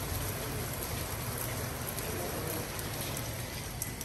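Heavy rain pouring down onto a paved parking lot, a steady even hiss of rain on wet pavement.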